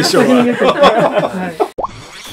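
People talking over one another, cut off abruptly shortly before the end. A brief rising blip follows, an editing transition sound effect.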